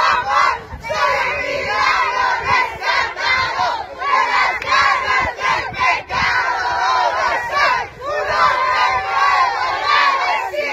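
A crowd of children and adults shouting and cheering together, many voices at once, rising and falling in waves.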